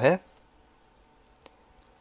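A single short computer mouse click about one and a half seconds in, with a fainter tick near the end, over near silence with a faint steady hum.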